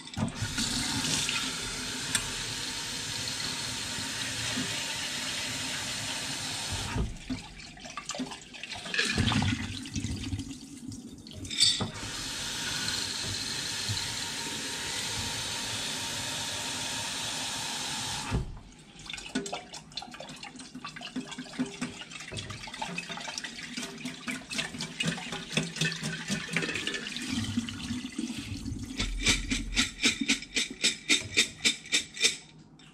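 Kitchen tap running into a glass sprouting jar through its screen lid, rinsing soaked popcorn kernels, in two steady runs of about seven and six seconds. Between and after the runs, water sloshes and drains into a stainless steel sink, and a quick series of knocks comes near the end.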